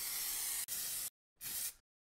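Steady high-pitched hiss with no tone in it, dropping out for an instant about two-thirds of a second in. It cuts off abruptly just after a second, returns in one short burst, then stops dead.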